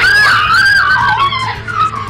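A sudden loud, high-pitched wavering squeal that bends up and down for about a second and a half, then trails off, over music playing in the background.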